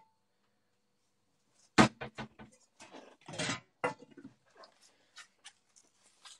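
A frying pan set down on an electric hob's cooking plate with one loud clank about two seconds in, followed by scattered knocks and clatter as it is handled.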